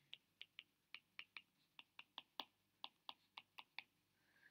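Faint irregular clicks of a digital pen's tip tapping its writing surface while equations are handwritten, about four a second.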